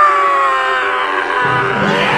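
A man's long, loud pained cry, sinking slowly in pitch, from a film battle scene. About a second and a half in, a deep rumbling roar of a charging army builds up beneath it.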